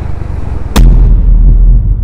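A sudden deep boom about three-quarters of a second in, followed by a heavy low rumble that carries on.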